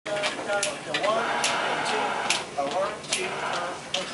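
A person's voice talking, with the words not made out.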